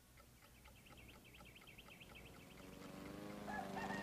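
Faint clucking, then a rooster crowing that swells louder through the second half, a morning cue.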